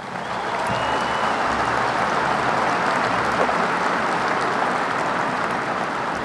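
Audience applauding, building quickly in the first second, then holding steady and easing slightly near the end.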